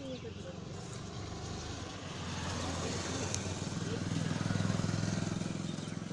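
A motor vehicle's engine passing by, its low hum growing louder to a peak about four to five seconds in and then fading.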